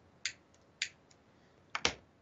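A few short, sharp clicks: two in the first second, then a quick, louder pair near the end.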